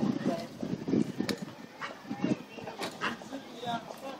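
A man crying out loud in short, broken bursts of sobbing.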